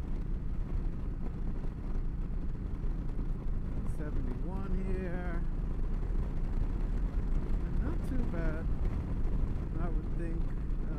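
Steady wind rush and engine drone of a Yamaha V Star 1300 cruiser at highway speed, heavy in the low end. A voice comes in briefly twice, about four and eight seconds in.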